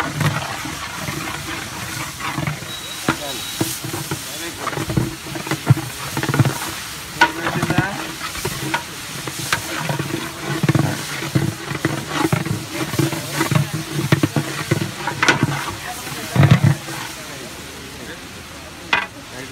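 Long-handled metal scoop stirring a huge aluminium pot of boiling palav: scraping and sloshing through the rice and liquid, with sharp clinks of the scoop against the pot several times, over an irregular low rumbling.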